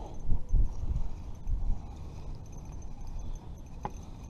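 Wind buffeting the microphone in uneven low rumbling gusts, strongest in the first two seconds, with a single sharp click near the end.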